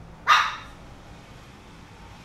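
A single short dog bark, about a quarter of a second in.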